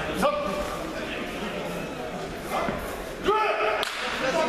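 Two loud shouted calls echoing in a large sports hall, one just after the start and one about three seconds in, over the murmur of a crowd, with a single sharp knock near the end.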